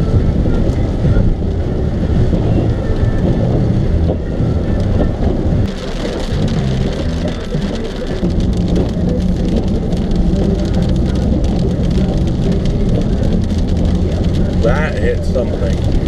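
Car running, heard loud from inside the cabin as a dense rumble, with a voice-like sound rising over it near the end.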